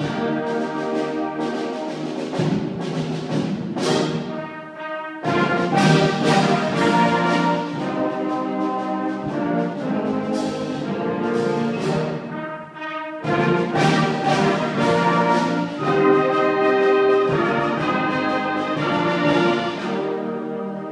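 Symphonic band playing a piece, brass and woodwinds holding full chords. The sound dips briefly and the whole band comes back in suddenly and loudly about five seconds in, and again about thirteen seconds in.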